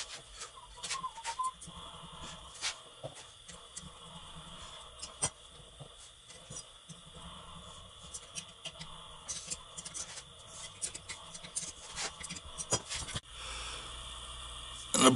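Scattered light clicks and taps of small metal engine parts and a hand tool being handled while a bushing is fitted to a Sea-Doo 951 engine's flywheel side, with a brief faint squeak about a second in.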